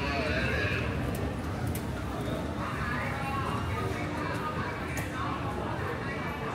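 Busy metro station concourse: indistinct voices of passers-by over a steady low hum and rumble, with a few light clicks.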